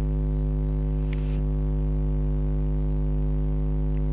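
Steady electrical mains hum: a low buzz with a stack of even overtones, and a faint hiss over it. A brief soft noise comes about a second in.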